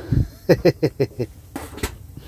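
Sucking and sputtering at a siphon hose as diesel is drawn by mouth from a truck's fuel tank: a quick run of about six short pulses a second, then two sharp clicks near the end.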